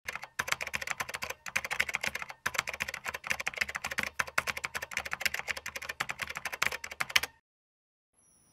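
Keyboard typing sound effect: a rapid run of key clicks with a few short pauses in the first two and a half seconds, stopping abruptly about seven seconds in.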